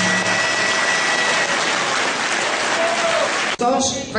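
Audience applauding steadily, the last held notes of the music dying away in the first half-second. The applause cuts off abruptly about three and a half seconds in, and a man starts speaking.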